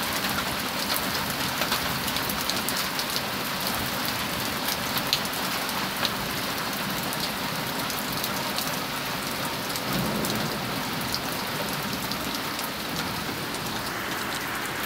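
Heavy rain mixed with pea-sized hail coming down like popcorn: a steady hiss of rain with many small sharp ticks of hailstones striking the porch and yard.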